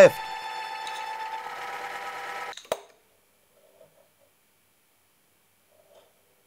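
Electric motor of a home-built linear drive turning its 6 mm threaded rod to move the loaded carriage, a steady whine of several tones that stops about two and a half seconds in. A single click follows, then near silence.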